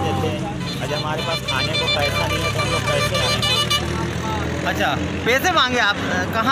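Men's voices talking in the background over roadside traffic noise. A vehicle horn sounds in a rapidly pulsing tone for about two seconds near the middle.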